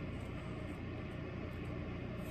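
Steady low room hum of an office, with no distinct handling sounds standing out.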